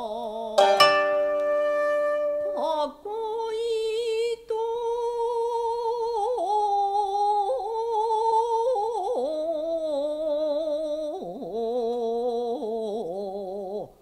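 Yamada-ryū sōkyoku: a voice sings long, wavering held notes in traditional Japanese style, with a koto string plucked about half a second in and again just before three seconds.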